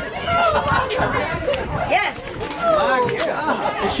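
Many voices talking and calling out at once, overlapping excited chatter from spectators and players with no single clear speaker.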